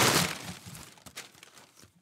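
Packing paper and cardboard crinkling and rustling as the shovel is handled over its box. The rustle is loudest right at the start and dies away within about a second, leaving a few small clicks.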